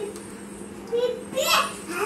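A child's voice calling out in short bursts about a second in and again near the end, the loudest sound, over a steady low hum and the sizzle of gulab jamun deep-frying in oil.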